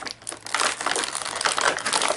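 Crinkling and crumpling of toy packaging being handled, an irregular crackle that starts about half a second in.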